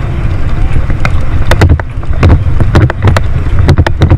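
Bicycle rolling over a cracked paved path, picked up by a handlebar-mounted camera: a steady low rumble of road and wind with frequent sharp knocks and rattles as the bike jolts over the cracks, coming thicker in the second half.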